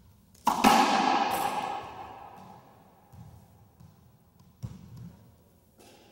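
Racquetball drive serve: a loud, sharp crack of the ball being struck and slamming into the front wall, echoing around the enclosed court for over a second. A few softer thuds of the ball follow, then a sharper knock about five seconds in and a small one near the end.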